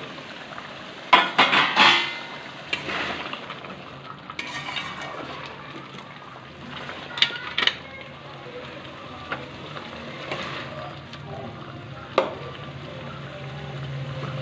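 A metal spatula stirring and scraping thick curry gravy in an aluminium kadai, with sharp clinks against the pan, over the steady low sizzle of the simmering curry. A louder metal clatter comes about a second in.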